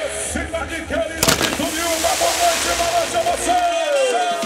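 Arena pyrotechnics firing: a sharp bang about a second in, then a loud steady hiss that lasts almost to the end. Under it a voice holds one long note over music, dropping in pitch near the end.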